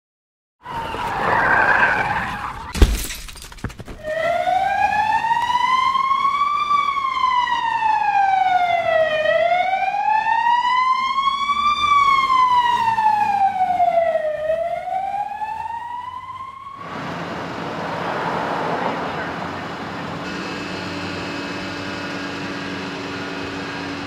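A brief screech, then a loud crash about three seconds in, followed by an emergency-vehicle siren wailing slowly up and down for a couple of cycles before cutting off. After it comes a steady hum of street traffic.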